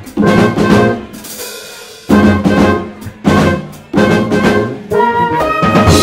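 A live jazz-fusion band, with trumpet over a drum kit, playing short, loud ensemble phrases separated by brief gaps. About five seconds in, a quick run of notes leads into held notes.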